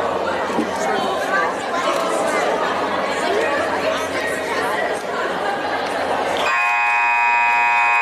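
Spectator chatter in the hall, then about six and a half seconds in the scoreboard buzzer sounds one steady, harsh tone that runs past the end, signalling the end of a timeout.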